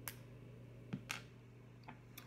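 Four short, faint plastic clicks as the protective cap is pulled off a syringe's needle and the syringe is handled.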